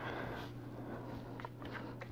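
Faint handling of small plastic miniatures on a wooden board, with a couple of light clicks in the second half, over a steady low electrical hum.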